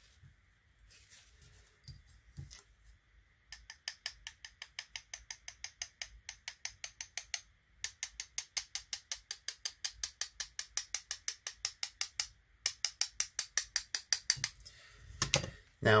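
Rapid hard taps, about six a second, in three runs with short pauses: a paint-loaded brush being knocked against another brush to splatter drops of paint onto the paper.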